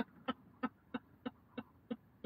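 A person laughing quietly, a run of short breathy 'ha' pulses about three a second that die away.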